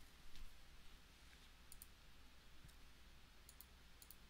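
Faint computer mouse clicks over a low steady hum: one click shortly after the start, then two quick pairs of clicks later on.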